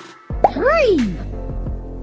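A short cartoon plop sound effect about half a second in as a toy-like block lands, followed by a child-like voice calling "Three!" over children's backing music with a steady bass line.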